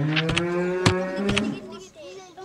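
A cow mooing: one long, drawn-out call that rises, holds steady and fades near the end, with a few sharp clicks over it.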